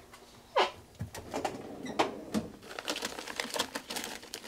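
Rummaging through workshop parts: a run of small clicks and rattles as things are handled, with a short squeak that slides down in pitch about half a second in.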